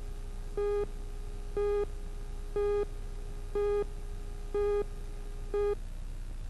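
Countdown leader beeps on a broadcast videotape: six short, identical beeps, one each second, over a low steady hum.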